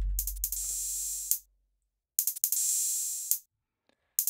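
Drum-machine pattern playing back in Ableton Live: bright, hissy high percussion hits with sharp clicks over a deep bass tone that dies away in the first second and a half. The playback twice drops to silence for about half a second.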